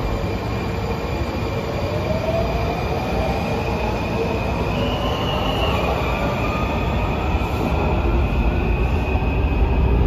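Washington Metro (WMATA) train pulling out of an underground station: a steady rumble with a whine that rises in pitch as it picks up speed, over a high thin squeal that holds steady and briefly steps higher about halfway through.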